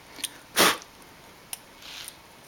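A short, sharp burst of breath about half a second in, with a few faint clicks from the plastic switch being handled.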